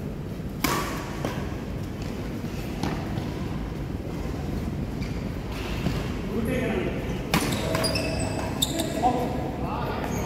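Badminton rackets striking a shuttlecock: one sharp hit about a second in, then three more hits close together near the end in a rally, echoing in the hall. Players' voices talking in between.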